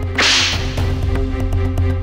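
A short dramatic swish sound effect about a quarter of a second in, over background music with a steady bass; a second burst of noise starts right at the end.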